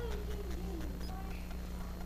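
A pause with a steady low electrical hum and room tone. A faint wavering, falling voice-like sound comes in the first second.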